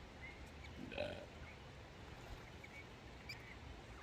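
Australian ringneck (twenty-eight) parrots calling faintly: a few short chirps, with one louder, harsher call about a second in.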